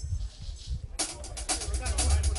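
Live band kicking into a Latin tune about a second in: drum kit and percussion in a fast, even rhythm over heavy bass, after a few low thumps.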